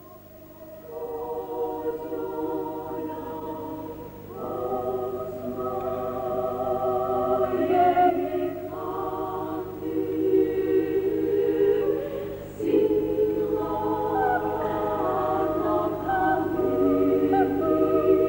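Ukrainian women's folk choir singing in several parts at once, with long held notes. The voices swell in about a second in, and new loud phrases come in about four seconds and twelve and a half seconds in.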